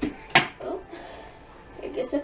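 A single sharp knock about a third of a second in, then brief vocal sounds near the end.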